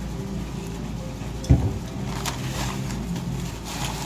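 A single thump about one and a half seconds in, over a steady low hum, followed by soft rustling of a brown paper sandwich bag being handled.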